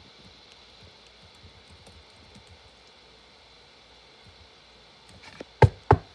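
Quiet room hiss, then a few faint taps and two sharp, loud knocks close together near the end: a knock at the door.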